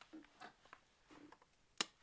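Quiet handling noise as a whiteboard marker is picked up from a desk, with one sharp click near the end.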